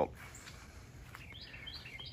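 A few faint, short bird chirps over quiet outdoor background noise, mostly in the second half.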